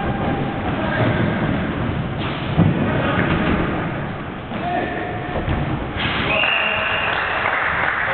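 Indoor five-a-side football in an echoing sports hall: players' voices calling out over the thud of the ball being kicked, with one sharp thud about two and a half seconds in.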